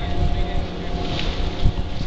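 Chairlift drive machinery humming steadily at the loading station, with wind rumbling on the microphone and a low thump near the end.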